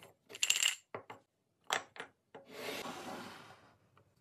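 A scoop clinking against a ceramic bowl of small hard pieces: a cluster of clinks, then a few single sharp clicks, followed by a little over a second of rushing, rustling noise.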